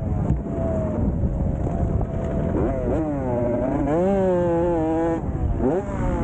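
Motocross dirt bike engine revving as it is ridden hard on a dirt track, its pitch sagging and then climbing sharply about two and a half seconds in and again near the end as the throttle is opened, with wind rumbling on the microphone.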